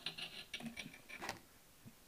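Mineral specimen scraped across an unglazed ceramic streak tile in a few short, faint scratchy strokes during the first second and a half: a streak test on a sulphide mineral taken for copper pyrites (chalcopyrite).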